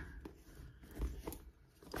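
Faint rustling and a few light clicks from a hand rummaging among the contents of a handbag, the most distinct click about a second in.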